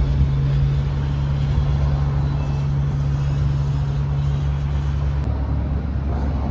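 A steady low hum with an even rumble beneath it, cut off abruptly about five seconds in.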